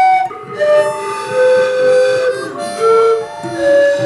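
Bamboo pan flute playing a slow melody of held notes, one after another, with a lower second part sliding beneath it.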